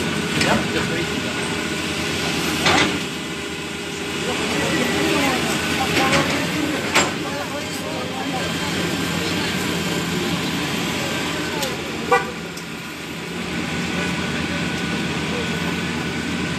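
Street traffic and engine noise running steadily, with people's voices and a few short sharp sounds. About twelve seconds in comes a brief vehicle horn toot.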